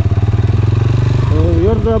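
Motorcycle engine running with an even, rapid pulsing beat, heard from the rider's seat.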